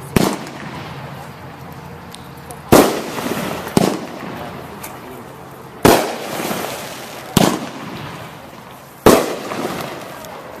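FOA After Shock aerial firework shooting off: six sharp bangs, one every one to two seconds, each trailing off in a fading hiss of falling sparks.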